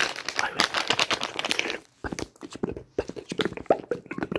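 A blue-and-white plastic packet crinkled and crackled by hand close to the microphone in quick bursts, breaking off for a moment about halfway.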